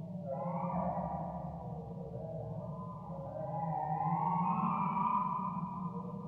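1960s–70s-style electronic synthesizer music: sustained tones sliding slowly up and down in pitch over a steady low drone. The sound swells louder about four seconds in.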